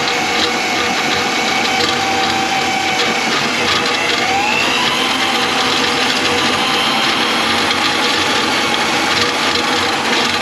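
Electric drum drain-cleaning machine running, its spinning cable being fed into a kitchen sink drain line clogged with grease. A steady motor whine that rises a little in pitch about four seconds in.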